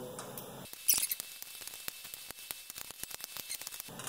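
Ratchet of a torque wrench clicking in a fast run, about eight clicks a second, as the differential's housing bolts are run down and tightened. The run starts just under a second in and stops just before the end.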